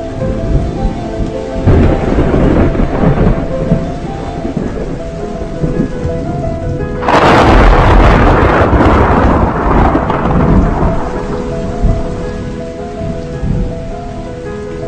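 Thunder rumbling over steady rain: a roll about two seconds in, then a much louder clap about halfway through that rolls on and fades over several seconds. Background music plays underneath.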